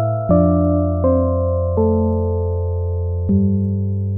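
Ambient electronic music played live on a DX7-style FM synthesizer: chords struck four times, each ringing on and fading, over a held low bass note.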